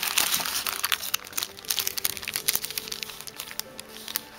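Thin translucent paper sleeve crinkling and rustling as sticker sheets are handled and slid out, in quick irregular crackles. Quiet background music with steady held notes underneath.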